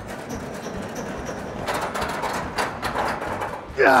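Steel-framed tin roof rolling along on its bearings as it is pushed by hand, a steady rumble with clanks and rattles from the sheet metal from about halfway. Near the end a man lets out a loud, falling "ah" of effort.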